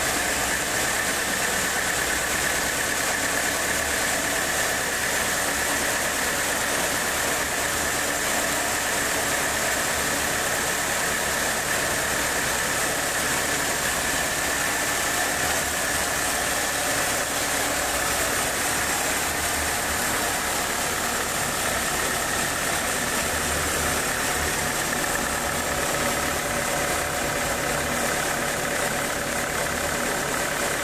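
Homemade band sawmill running steadily, its band blade sawing through a large old teak log, with a steady high whine over the machine noise.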